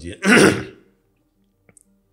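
A man clearing his throat once, briefly, near the start, followed by quiet with a faint click.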